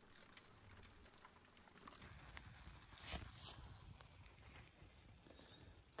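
Near silence, then faint crackling and popping of a wood campfire from about two seconds in, the loudest pop about three seconds in.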